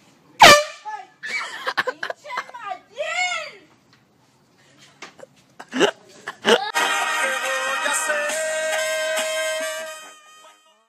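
Handheld canned air horn blasted at close range, first in a very loud burst about half a second in and then held for a few seconds near the end, with people screaming and laughing in between.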